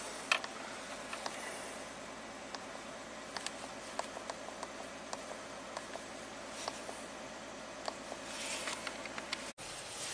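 Quiet in-cabin sound of a 2016 Dodge Grand Caravan's 3.6 Pentastar V6 driving at low speed: a steady low engine and road hum with scattered small clicks. The engine is running smoothly after its cam timing was corrected.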